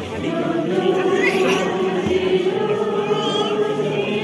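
A choir of mixed voices singing, holding a long sustained note from about half a second in.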